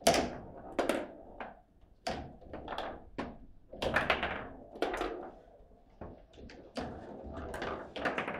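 Table football in play: a string of sharp, irregular knocks and clacks as the ball is struck by the plastic rod figures and hits the table's walls, with the rods knocking in their bearings.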